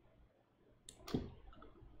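Two faint clicks about a quarter second apart, about a second in: a computer mouse being clicked.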